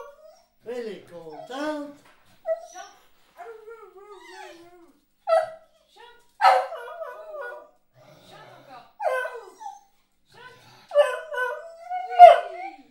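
A beagle howling and whining in a string of short yowls that waver in pitch, with one longer wavering howl about three and a half seconds in; it is the excited 'singing' of a dog eager to go out for a walk.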